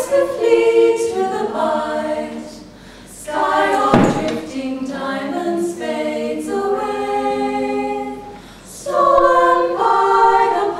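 Mixed a cappella choir of sopranos, altos, tenors and bass singing a slow song in phrases, with brief breaths between them. A single low thump sounds about four seconds in.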